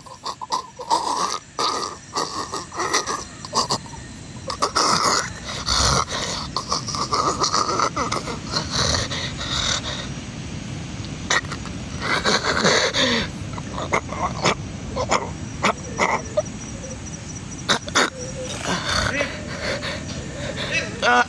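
Undergrowth rustling and crackling close by, mixed with uneven grunting, growling noises.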